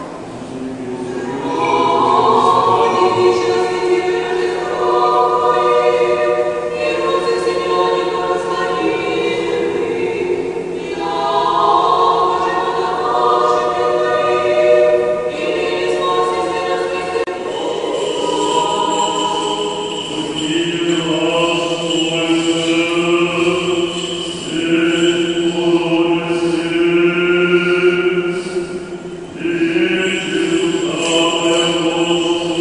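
Church choir singing unaccompanied Orthodox liturgical chant in several parts, in phrases of a few seconds each. A lower, stronger part comes in about two-thirds of the way through.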